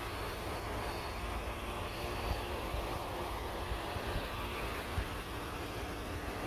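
Steady low rumble with a hiss over it, even throughout and with no distinct events.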